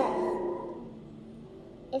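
A person's voice trailing off over the first half-second, then a quiet stretch of room tone, and speech starting again near the end.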